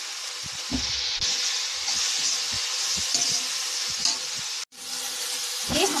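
Chopped mustard flowers and green garlic sizzling steadily in oil in a kadhai, just after two spoonfuls of water were added, with a few dull knocks.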